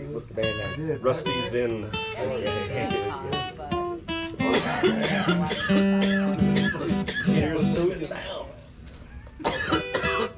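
Acoustic guitar being played, a run of separate picked notes and chords, with voices talking over it at times.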